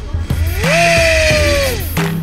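Small DIY brushless inrunner motor spinning unloaded with no propeller. It revs up quickly to a high whine, holds for about a second and winds back down near the end.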